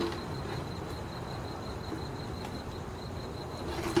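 Quiet outdoor background: a steady low hiss with a faint, continuous high-pitched tone, and no clear blows or voices.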